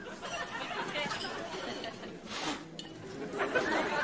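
Indistinct background chatter of several people's voices, with a short burst of noise about halfway through.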